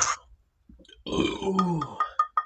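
A man burps once, starting about a second in and lasting about a second, the pitch dropping as it goes.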